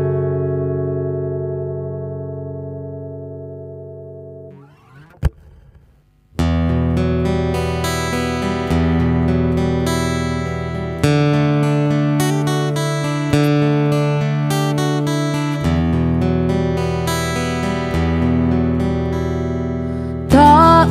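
An acoustic guitar's final chord fades out over about four seconds, followed by a single short click and a moment of near silence. About six seconds in, a new acoustic guitar intro starts: plucked and strummed chords in a steady rhythm.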